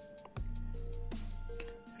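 Background music with a steady beat over held bass notes.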